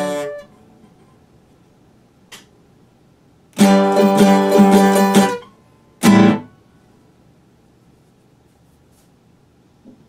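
Classical guitar played in broken fragments. A phrase dies away at the start, a quick burst of notes comes a few seconds in, and one short chord is struck about six seconds in, with quiet pauses between.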